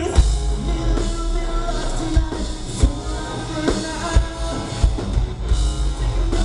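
Live rock band playing loud: electric guitars, bass and a drum kit with a singer, heard from within the audience.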